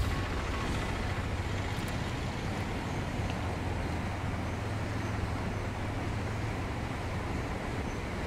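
Motorcycle riding at a steady pace: a steady low engine hum under even wind and road noise.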